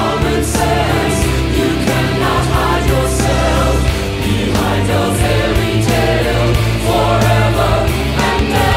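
A symphonic metal band with a choir, playing loud and steady: mixed choir voices over drums, bass and keyboards.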